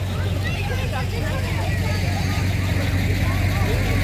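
Fire truck engine running with a low, steady rumble that grows slightly louder as it draws close, with crowd chatter around it.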